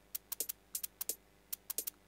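A fast hi-hat sample playing on its own in a drum-and-bass break: about ten very short, very transient-heavy ticks in an uneven, quick rhythm, bright and thin with little low end.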